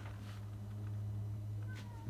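A steady low hum, with a faint short falling squeal near the end.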